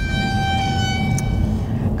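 Low rumble of a moving car heard from inside the cabin, with a steady electronic tone held over it that fades out in the first second and a half.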